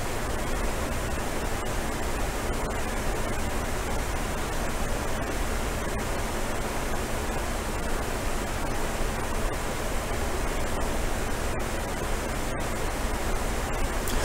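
A steady, even hiss like static, with no other sound, broken only by a few tiny momentary dropouts.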